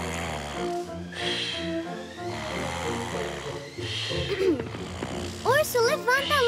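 Gentle background music over a cartoon bear's snoring: slow, regular low snores about every second and a half. Near the end a high, wavering voice comes in.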